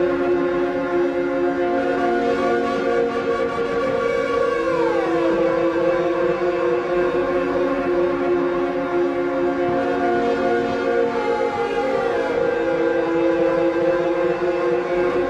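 Experimental electronic music: a sustained drone of several steady tones held together, with a cluster of tones gliding downward about four seconds in and again near the end.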